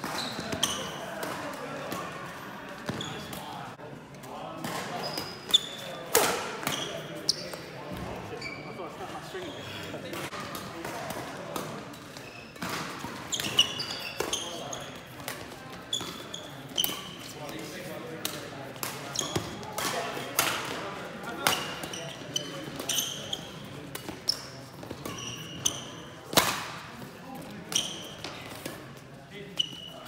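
Badminton rallies: a shuttlecock struck back and forth by rackets, sharp hits at irregular intervals echoing in a sports hall, with short squeaks of court shoes on the floor.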